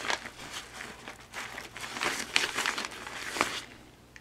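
Packaging crinkling and rustling in irregular crackles as items are handled and pulled from a bag, dying down a little before the end.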